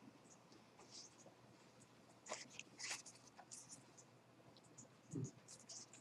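Near silence: room tone with a few faint, scattered ticks and rustles.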